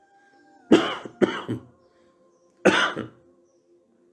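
A man coughing, three short coughs about a second apart.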